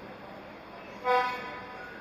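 A single short, loud toot of a horn about a second in.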